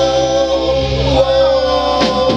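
Live rock band playing, with singing over one long held note and the guitars and keyboard sustaining underneath.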